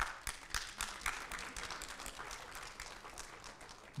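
Congregation applauding, with one person clapping really loud among them; the applause thins out toward the end.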